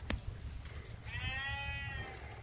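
A single drawn-out farm animal call, about a second long and fairly steady in pitch, starting about halfway through. A sharp knock comes right at the start.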